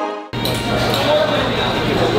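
Background music fading out, then, after a sudden cut, restaurant room noise: a steady hum under indistinct voices, with a glass clinking as it is set down on the table.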